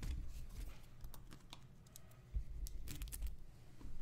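Irregular light clicks of typing on a computer keyboard, in short flurries, with a few low bumps underneath.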